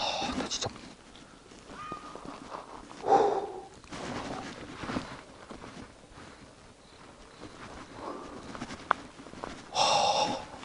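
A man breathing hard while walking uphill on a dirt path, a loud breath every two to three seconds, the loudest about three seconds in, with footsteps on the path between breaths.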